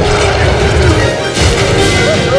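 Loud dramatic film score mixed with crash and impact sound effects, with a sharper crash about one and a half seconds in.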